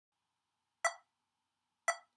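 Metronome clicking about once a second: two short, sharp, woodblock-like ticks setting a slow tempo for the scale.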